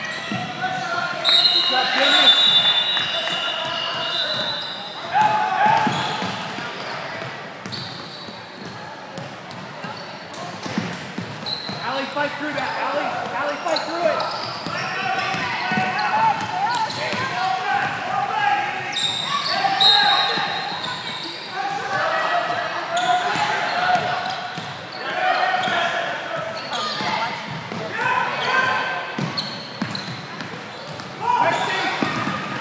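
Gym ambience during a youth basketball game: players and spectators shouting, echoing in a large hall, with a basketball bouncing on the hardwood. A few high squeaks come near the start and again about two-thirds through.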